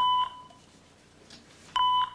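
Electronic beep from a small toy's speaker, sounding twice: a short, steady high tone at the start and again near the end, repeating about every second and three-quarters.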